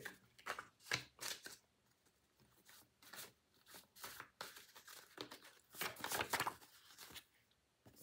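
A deck of tarot cards handled and shuffled by hand as reversed cards are turned the right way up: quiet, irregular flicks and rustles of card stock, busiest at the start and again about six seconds in.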